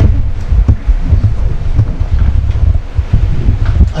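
Low, uneven rumble of handling noise on a microphone, with a few faint knocks.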